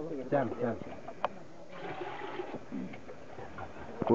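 Faint background voices of people talking, with one sharp click a little over a second in and a short hiss around the middle.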